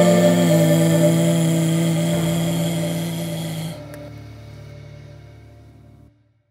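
Closing held note of a blues song on kamancheh and piano: a sustained chord that drops away sharply a little over halfway through, the rest dying out near the end.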